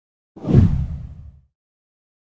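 A whoosh transition sound effect with a deep, low body, starting about a third of a second in and fading away by about a second and a half.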